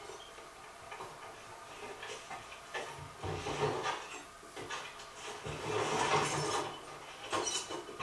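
Episode soundtrack played quietly through speakers: a wooden crate being handled and its latches undone, with scraping and knocking, loudest in two stretches in the middle.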